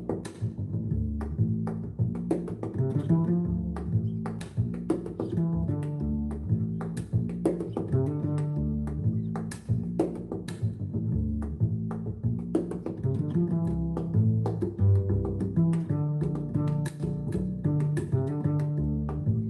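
Instrumental background music led by piano, a steady run of low and middle notes.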